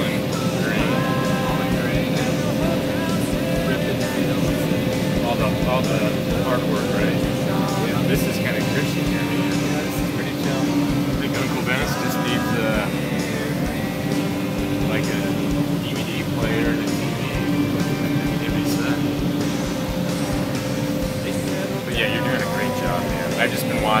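Combine harvester running steadily while harvesting corn, heard from inside the cab: a continuous drone with two steady hums.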